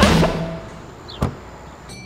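The last chord of a rock guitar title sting rings out and fades within the first half-second. It is followed by a single sharp knock about a second in, then quiet room tone.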